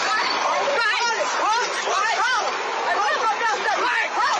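Several people's voices talking over one another, with no words clear enough to make out.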